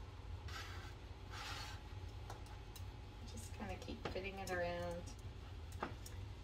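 Soft rustling of hands pressing and smoothing a rolled pie crust into a pie plate, twice in the first two seconds, with a short hummed voice sound a little after the middle.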